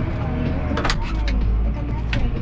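Massey Ferguson tractor engine running under load on a silage clamp, heard from inside the cab. Its low rumble grows heavier about a second in, with one short sharp sound just before.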